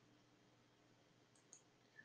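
Near silence: room tone, with a couple of faint clicks about a second and a half in and another right at the end.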